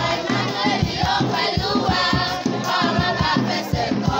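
Schoolchildren's choir singing a Christmas carol together, over a steady low beat.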